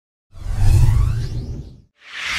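Whoosh sound effect of a logo intro, a swoosh with a deep rumble under it. It starts about a third of a second in, swells, and fades away just before the end.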